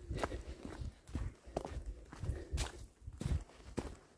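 Footsteps of a person walking on a hiking trail, at a steady pace of about two steps a second.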